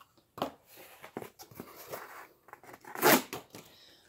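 Freshly sharpened Gerber Asada cleaver blade slicing through scrap cardboard: a short rasp about half a second in, faint scraping, then a longer, louder slicing stroke about three seconds in.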